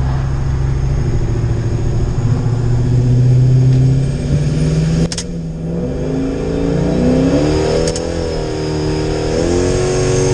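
Supercharged 5.7 Hemi V8 pickup engine heard from inside the cab: it cruises steadily, then from about halfway its revs climb under acceleration, dipping once and climbing again near the end as a gear changes.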